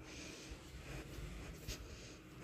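Elevator car arriving at the landing, heard from the landing: a faint steady hiss and low rumble, with a single short click near the end.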